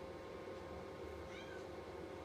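Faint room tone with a steady electrical hum. About a second and a half in there is a brief, faint high call that glides in pitch.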